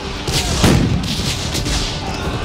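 Cannon fire: a deep boom a little after the start, rolling on as a low rumble that slowly fades.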